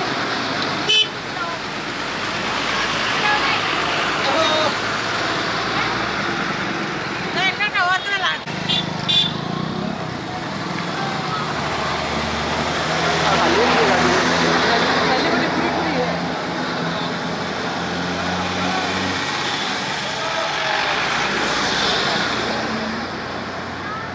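Buses driving slowly past one after another, engines running, with horns tooting now and then over a crowd's voices.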